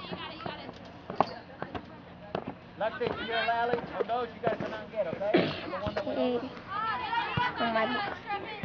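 Indistinct shouting and calling from several voices at once, with a few sharp knocks scattered through.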